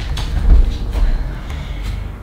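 A body shifting on a yoga mat over a wooden floor while settling into pigeon pose, with a low thump about half a second in and soft knocks of limbs on the mat.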